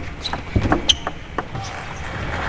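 Table tennis ball clicking sharply on bats, table and floor, about five knocks at uneven spacing as a rally ends, over steady arena background noise.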